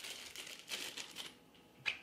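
Small plastic zip baggie crinkling as hands handle it to get at small plastic pegs, then a single sharp click near the end.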